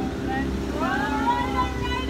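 Pontoon boat's motor running steadily under way, a low even hum, with a person's voice gliding in pitch over it from about half a second in.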